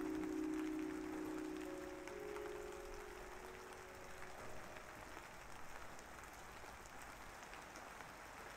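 Steady rain sound effect, a soft hiss with scattered drops. The last held notes of gentle background music fade out under it over the first few seconds.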